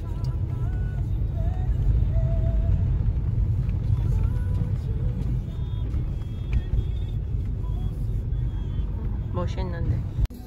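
Car cabin noise while driving: a steady low rumble of tyres and engine heard from inside the car.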